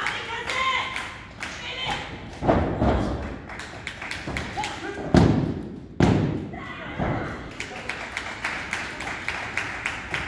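A wrestler slammed onto the ring canvas with a heavy thud about two and a half seconds in. Then come the referee's hand slaps on the mat for the pinfall count, three slaps about a second apart, the first the loudest. Voices call out around them.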